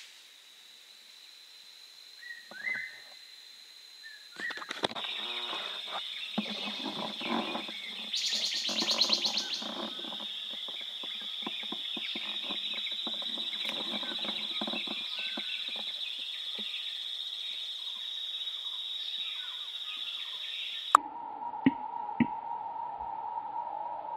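Tropical forest ambience: a steady high-pitched insect drone sets in a few seconds in, under many bird chirps and calls, with a fast pulsing trill around the middle. Near the end the sound changes suddenly and two sharp clicks are heard.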